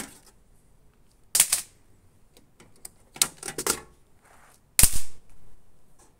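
Sharp metal clicks and clacks from the aluminium mesh grease filters of a range hood being unlatched and pulled out of the sheet-metal housing. There is one clack about a second and a half in, a quick cluster around three to four seconds, and the loudest clack near five seconds.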